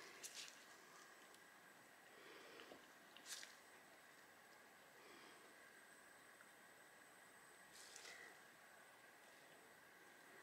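Near silence: room tone with a few faint, brief rustles, one near the start, one a little after three seconds in and one about eight seconds in.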